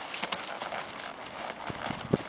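Hoofbeats of a ridden chestnut Quarter Horse gelding cantering on gravel and packed dirt: a quick, uneven run of short strikes.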